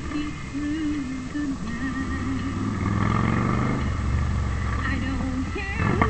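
A car driving, heard from inside the cabin. The engine's low rumble swells from about two seconds in as the car speeds up, under a radio playing music with a singing voice.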